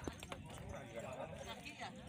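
Faint voices of people talking in the background, with scattered light clicks and knocks.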